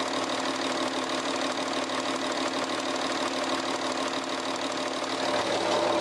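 Audi A6 3.0 TDI's V6 diesel engine idling steadily, heard from over the open engine bay. It runs evenly, described as quiet, the sign of an engine in good condition.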